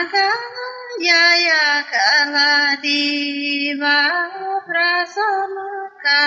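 A woman singing a Tamang folk melody in long, held notes that step up and down in pitch, with a brief break about two seconds in.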